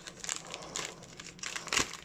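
Taped clear plastic wrapping crinkling as it is pulled open by hand, a run of small irregular crackles.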